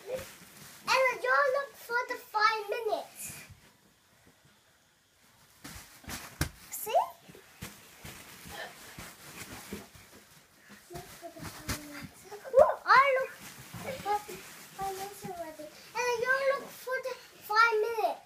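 Young children's high-pitched voices calling out in short bursts, with a quiet stretch about four to five seconds in.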